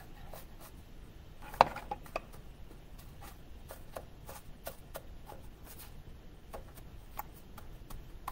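Graham cracker crumb crust being pressed by hand into a metal baking pan: faint scattered taps and scrapes, with one sharper click about a second and a half in.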